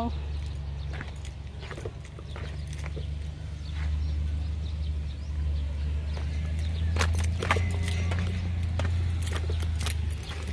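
Steady low wind rumble on the microphone of a handheld phone carried outdoors, with a few sharp clicks about seven seconds in and again near the end.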